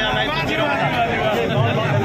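Men talking into a handheld microphone, with crowd chatter behind.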